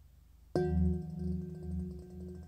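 Processed recording of a struck metal lampshade: about half a second in, a sudden ringing metallic tone with many overtones starts over a faint low drone, then rings on, its level wavering slowly.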